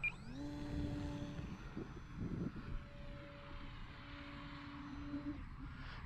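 The HobbyZone Carbon Cub S2's brushless electric motor and propeller whine rising in pitch as the throttle comes up for takeoff, then holding a steady tone. The tone dips for about a second near two seconds in before steadying again, and fades near the end.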